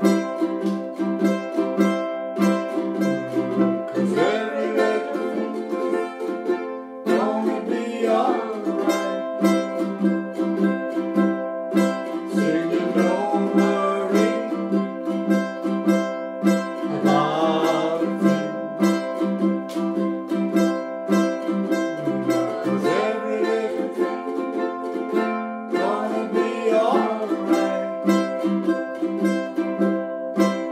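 A group of ukuleles strumming chords in a steady rhythm.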